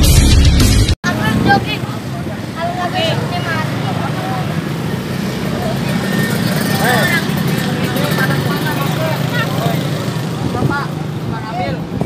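Intro music cuts off about a second in. After that, indistinct voices of several people talk over a steady low hum.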